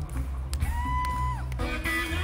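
Live pop band playing through the PA, with one clean held note that slides up into place and falls away about a second later over a steady bass line.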